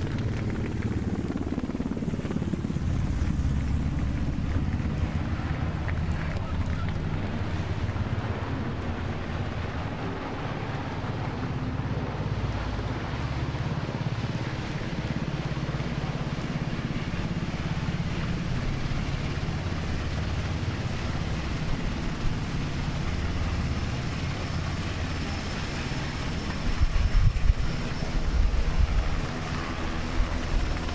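Sikorsky MH-60 Jayhawk twin-turbine helicopter passing low overhead: steady rotor and turbine noise with a heavy low rumble, swelling into low buffeting on the microphone near the end.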